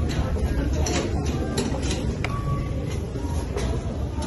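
Steady low rumble of a subway station, with scattered short clicks and knocks from footsteps and handled shopping bags.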